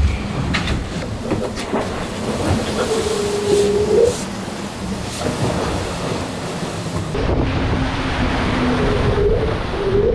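Racing trimaran under way at sea: a steady rumble of the hull with knocks and rattles inside the cabin, then wind and rushing water on deck from about seven seconds in.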